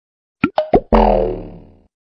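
Cartoon-style logo sound effect: three quick springy blips that slide in pitch, then a ringing chord that fades away over about a second.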